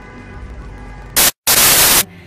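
A loud burst of white-noise static, broken by a split-second of silence, fills roughly the last second; before it there is only a low steady hum.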